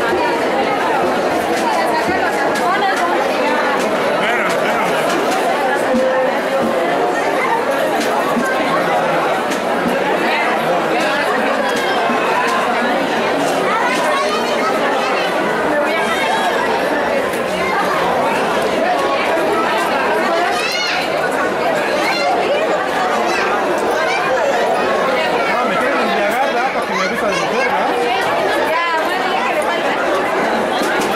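Crowd chatter: many people talking at once, a steady babble of overlapping voices with no single voice standing out.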